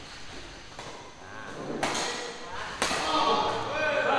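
Badminton racquets striking a shuttlecock during a rally: two sharp hits about a second apart, followed by people's voices in the hall.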